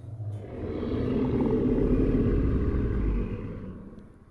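A film raptor's deep, rough growl that swells up over about a second, holds, and dies away near the end.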